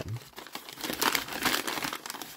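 Crumpled brown kraft-paper bag being handled and reached into, crinkling and rustling in a run of sharp crackles, loudest about a second in.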